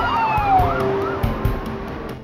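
Police car siren in a rapid warbling yelp, with a longer tone falling in pitch beneath it, fading out within the first second.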